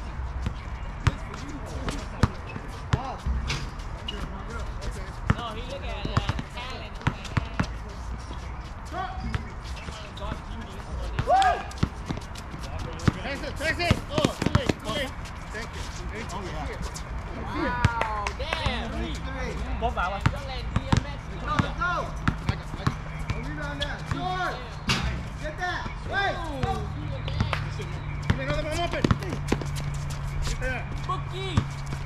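Basketball dribbled and bouncing on an outdoor hard court, sharp ball impacts scattered throughout, with players' voices calling out in the background.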